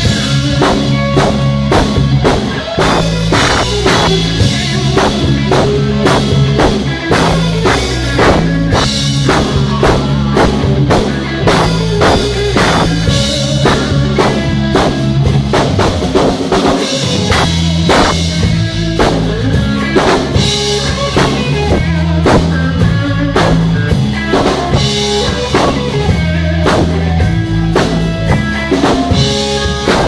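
Live rock band playing an instrumental passage on electric guitar, electric bass and drum kit, loud with a steady drum beat. The bass drops out briefly a little past halfway.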